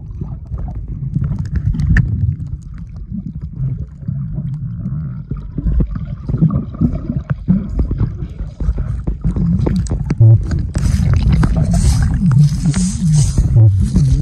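Underwater noise picked up by a submerged camera: churning, gurgling water with scattered clicks and knocks as a swimmer moves nearby. From about two-thirds of the way in, a loud hissing, fizzing noise like bubbles is added.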